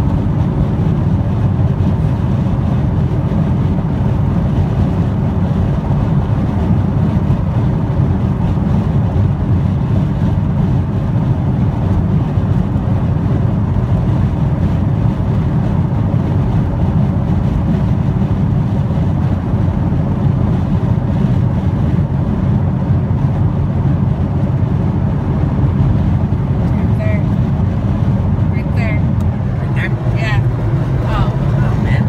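Steady road noise inside a car cabin at highway speed: a constant low rumble of tyres and engine.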